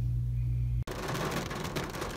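A low steady hum cuts off suddenly less than a second in. It gives way to rain falling on a car's windshield and roof, heard from inside the cabin as a dense patter of drops.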